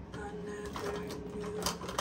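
Small makeup items clicking and rattling against a bathroom counter as they are sorted through by hand, with several sharp clicks, the loudest near the end, over a steady held tone.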